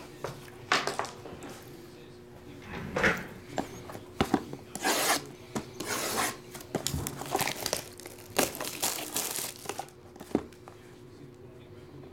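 Plastic shrink wrap on a cardboard card box being slit with a box cutter and pulled off: irregular crinkling and tearing rustles with a few short knocks, busiest in the middle and dying away near the end.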